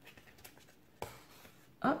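Needle and thread being passed and drawn through a hole in a paper booklet: faint rustling and scratching of paper and thread, with one sharper tick about a second in.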